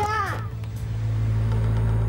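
A boy's shouted voice cuts off about half a second in, followed by a steady low rumble.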